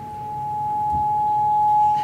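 Acoustic feedback through the venue's PA from a handheld microphone: a single steady whistling tone that swells louder and louder.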